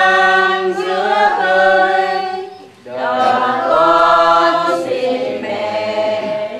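A group of mixed voices singing a hymn together in held, slow notes, with a brief break in the singing about halfway through before the next phrase begins.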